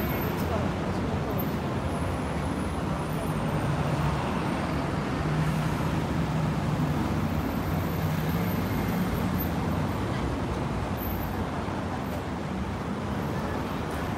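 Steady city street traffic noise, a continuous low rumble of passing road vehicles.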